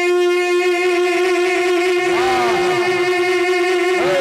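A male naat reciter holding one long, steady sung note into a microphone. Fainter voices with wavering pitch come in underneath about halfway through.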